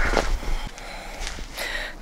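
A person breathing close to the microphone, with a short breath near the end.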